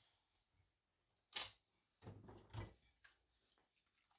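Faint handling noises on a workbench: one sharp click about a second and a half in, then a short bout of rustling, likely the plastic film masking the hull, and a few light taps.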